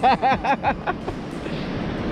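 A man laughing in a quick run of short 'ha-ha' bursts for about the first second, then a steady hiss of wind on the beach.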